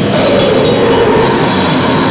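Live grindcore band at full volume through a club PA: heavily distorted guitar and bass in a dense, continuous wall of noise, with a vocalist screaming into the microphone, overloading the camera's built-in microphone.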